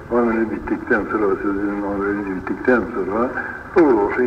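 Speech only: a man's voice talking or reciting without a break, in an old recording that sounds thin and muffled, with nothing above the middle of the voice's range.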